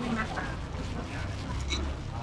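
Scattered background voices, with short nasal-sounding vocal fragments, over a steady low rumble.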